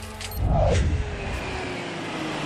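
A loud rumbling whoosh swells about half a second in and eases over the next second, with a faint tone slowly falling in pitch beneath it.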